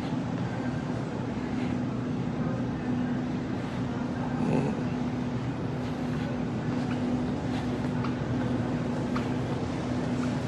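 Supermarket background hum from refrigerated display cases and ventilation: a steady low drone with a held tone and evenly spaced overtones, over a wash of store noise with a few faint clicks.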